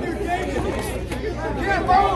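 Spectators' voices overlapping in a steady babble of chatter, with no single clear speaker.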